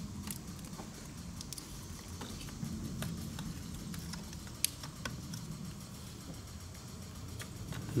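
Wiring harness being handled over an engine, with faint plastic clicks and rustling as fuel injector connectors are pushed onto the injectors. One sharper click comes a little past halfway, and a low steady hum runs underneath.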